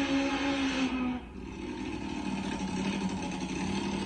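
Nitromethane-burning Top Fuel drag motorcycle engine running through a tyre burnout. The sound drops away about a second in, then settles to a steady lower tone.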